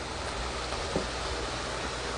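Stir-fried webfoot octopus (jjukkumi) simmering in an electric pot, giving a steady, even sizzling hiss, with one light click about a second in.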